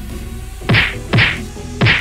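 Three cartoon punch sound effects, whacks about half a second apart, each dropping quickly in pitch, over background music with a steady beat.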